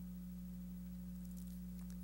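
A steady, faint low hum: one held tone with weaker, higher overtones and a deeper drone beneath, unchanging throughout.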